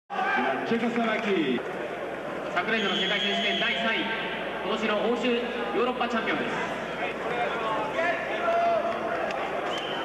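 Speech only: a man giving commentary on a wrestling match in a foreign language.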